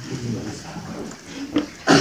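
A low, wordless human vocal sound during a pause in speech, followed by a short click about one and a half seconds in, and then a man's voice beginning to speak at the very end.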